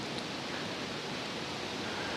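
Steady low hiss of room tone, with no distinct sound event.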